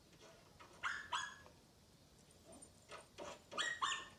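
A dog barking in short yips: two about a second in, then a quick run of several near the end.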